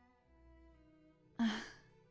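A woman's short, breathy "uh" like a sigh, about one and a half seconds in, over quiet background music of sustained string-like tones.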